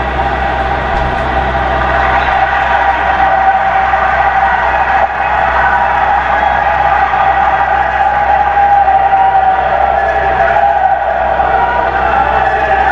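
Large seated audience applauding, a long unbroken round of clapping.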